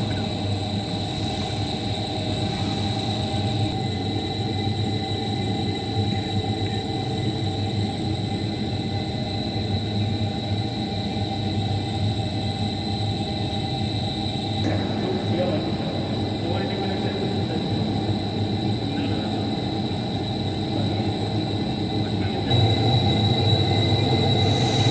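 Commercial drum coffee roaster running while it preheats: a steady mechanical hum from its drum motor, exhaust fan and gas burner, with a constant high whine. The low hum gets a little louder near the end.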